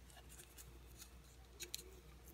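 Faint crinkling and ticking of a small paper slip being folded by hand, with two slightly louder clicks a little past one and a half seconds in.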